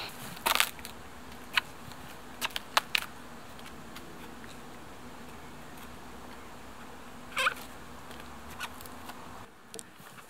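A knife blade prying and chipping at the rotten wood of a dead tree trunk, giving a few short sharp cracks and clicks, a cluster of them in the first three seconds and one more, longer one later, over a faint steady background.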